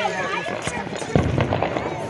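New Year's fireworks and firecrackers popping around the neighbourhood: a scatter of sharp bangs, with a heavier, deeper boom a little past halfway.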